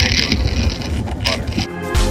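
Low, steady rumble of wind on the microphone and longboard wheels rolling over asphalt. Background music starts near the end.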